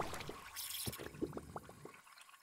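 Faint liquid-splash sound effect trailing off into several small water-drop plinks.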